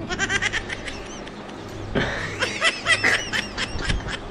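Birds chirping in quick runs of short, high, arched calls, busiest in the second half, over a low steady hum.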